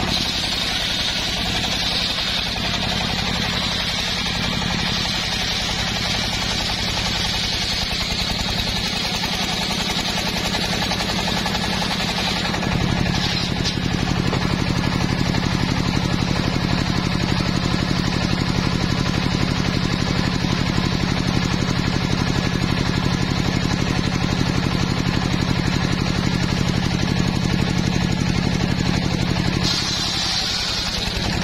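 Homemade engine-driven circular sawmill ripping a trembesi (rain tree) log: a steady engine drone under the high whine of the blade cutting wood. About 13 seconds in the sound gets louder with a stronger low hum while the high whine fades.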